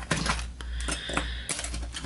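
Light clicks and taps of small fly-tying tools being handled and set down, with a faint ringing tone in the middle.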